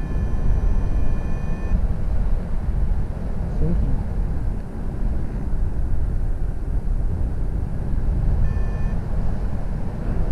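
Wind rushing over the microphone in paraglider flight, a steady low rumble. A steady electronic tone from the Flymaster flight instrument sounds for the first second or two and again briefly near the end.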